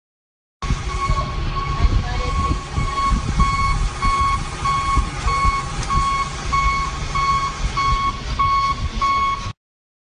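Vehicle warning beeper sounding an even, repeated electronic beep, about two beeps a second, over the low rumble of the moving vehicle. It starts about half a second in and cuts off abruptly near the end.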